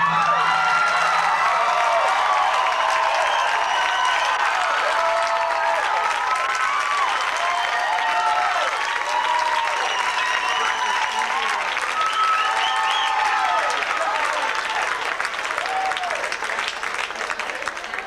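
Audience applauding and cheering, with many shouts and whoops over the clapping, easing off slightly near the end.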